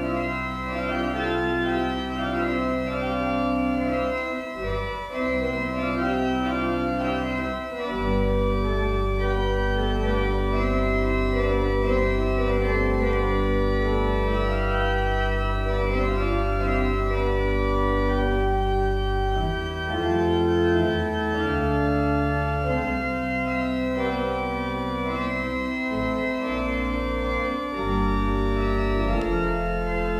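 Church organ playing slow, sustained chords over deep pedal bass notes, the harmony and bass changing every few seconds.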